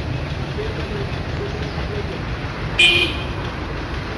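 A short, high-pitched vehicle horn toot about three quarters of the way in, over a steady low outdoor rumble and faint distant voices.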